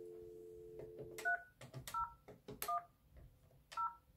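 Dial tone on a FortiFone IP phone, two steady tones that cut off about a second in as the number 3010 is keyed in. Then four short touch-tone (DTMF) beeps follow, each with a light key click, spaced unevenly.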